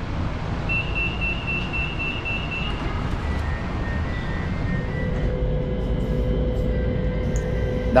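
Metro train interior: a high electronic door-warning tone beeps for about two seconds near the start, over the train's steady low rumble. Steady electric motor tones come in partway through as the train sets off.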